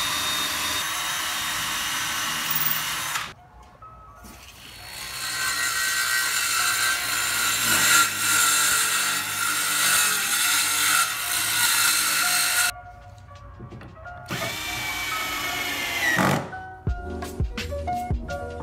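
Circular saw cutting reclaimed pallet boards in several runs with short pauses between, its motor winding down with a falling whine after the last cut. Near the end, short bursts from a cordless drill driving screws. Music plays underneath.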